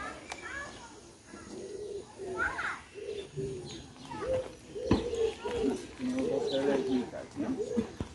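Birds cooing over and over in short low notes, with background voices and one sharp knock about halfway through.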